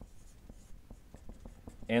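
Marker writing on a whiteboard: faint scratching strokes and light taps as letters are drawn.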